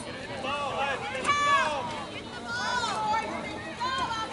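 Several voices talking at once, overlapping chatter from spectators close by, with no single clear voice.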